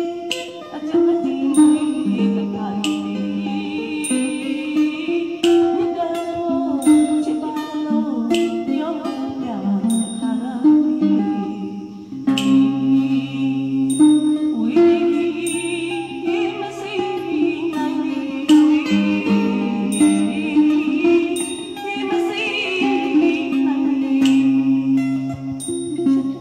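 A woman singing a Burmese song into a microphone, accompanied by a plucked mandolin.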